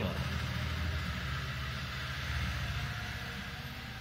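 Steady low hum with an even hiss of background noise, fading slightly.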